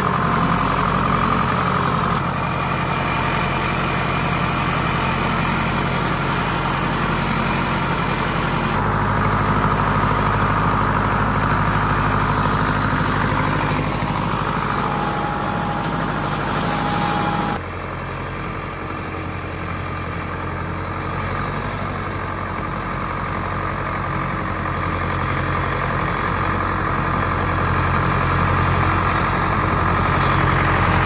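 Ford 861 tractor's four-cylinder diesel engine running steadily while pulling a loaded box grader, working without bogging. Its tone shifts abruptly twice, about a third and about two-thirds of the way through.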